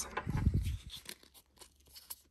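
Rustling and light clicks of a plastic Wallflowers fragrance refill and its paper tag being picked up and handled. The sound is busiest in the first second, then thins to a few faint clicks.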